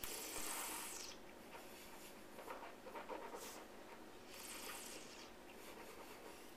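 Faint breathing and mouth sounds from a person tasting wine: a breath out through pursed lips at the start, then two shorter breaths about three and a half and four and a half seconds in.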